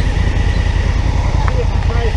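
Motorcycle engine idling at a standstill: a steady low throb of even firing pulses.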